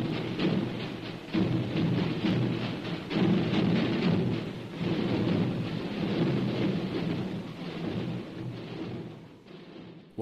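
The drums of Calanda: a mass of drums beaten together in a dense, rolling, relentless rhythm, dying away over the last couple of seconds.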